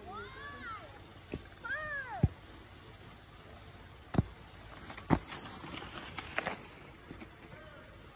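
A child's high voice calls out twice with a rising-then-falling pitch in the first two seconds, then skis hiss across packed snow as a young skier passes close by, with a few sharp knocks scattered through.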